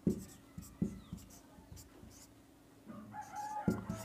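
Marker pen writing on a whiteboard: faint, scattered short taps and strokes as letters are written. A brief faint pitched call sounds in the background near the end.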